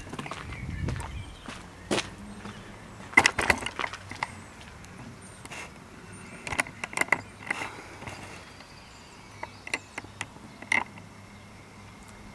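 Outdoor background noise with a few scattered light clicks and scuffs in small clusters, about two seconds in, around three seconds in, near the middle, and again near the end.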